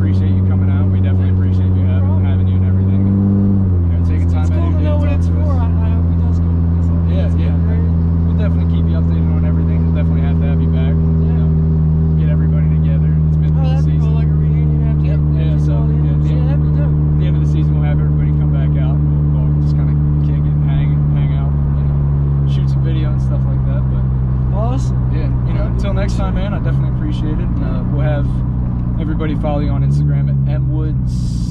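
A car engine droning at a steady cruise, holding one low pitch. The pitch drops about four seconds in and shifts again in the second half.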